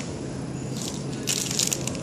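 Flow-wrap packing machine running with a steady low hum, while clear plastic film bags of packed cutlery crinkle in bursts from about a second in.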